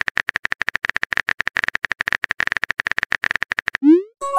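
Rapid phone-keyboard tap clicks, about a dozen a second, as a text message is typed out. Just before the end they give way to a short rising bloop, the sent-message sound.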